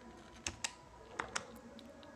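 Faint clicks of the plastic keys on a Casio fx-991MS scientific calculator being pressed: four short clicks in two quick pairs, the display being cleared.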